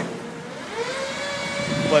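A passing vehicle's engine whine, holding a steady pitch that rises slightly about halfway in, over faint street noise.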